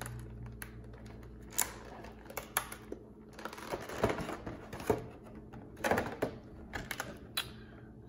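Clear plastic blister packaging of a trading-card box being flexed and pried apart by hand, giving irregular crinkles and sharp clicks.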